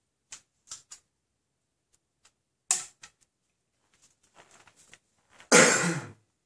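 Handling noise from an archer's release aid at the bowstring: a few light clicks, one sharper click near the middle, and a flurry of small ticks. About half a second before the end comes the loudest sound, a half-second rasp as the release's wrist strap is fastened.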